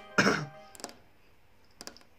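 A single short cough or throat clearing, followed by two faint clicks about a second apart.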